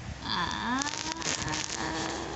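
Wordless vocal sound from a person: a voice sliding upward in pitch, then holding one steady tone, with a few light rustling clicks in between.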